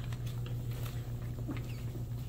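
Classroom room tone: a steady low hum with faint rustles and small clicks of paper sheets being handled.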